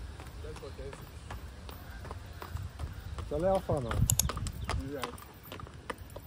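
A horse's hooves clopping as it walks up and stops close by, with a person's brief exclamation about halfway through.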